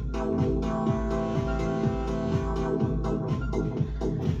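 Keyboard synthesizer playing an electronic pattern: a repeating low bass pulse under a held chord that sustains for almost the whole time and stops just before the end.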